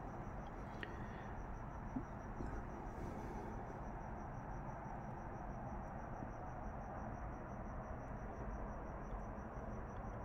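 Faint steady background hiss and hum, with a faint high-pitched pulsing tone throughout and a small tick about two seconds in: room tone.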